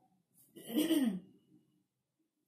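A woman's single brief vocal sound, about half a second long and falling in pitch, starting about half a second in.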